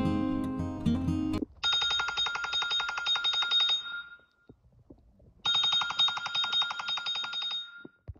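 Acoustic guitar music stops about a second and a half in. A wake-up alarm then rings in two bursts of about two seconds each, a high, rapidly pulsing trill, with a short silence between them.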